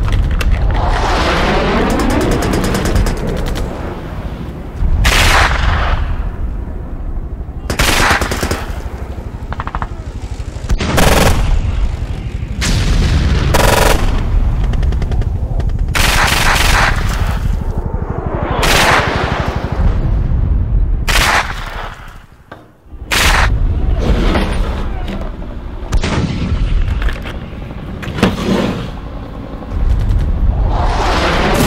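Battle sound effects: bursts of rapid machine-gun fire and single gunshots, mixed with booms, with a short lull about 22 seconds in.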